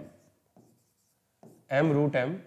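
Faint stylus strokes on an interactive whiteboard while writing, between short stretches of a man's voice: one trailing off at the start and one resuming near the end.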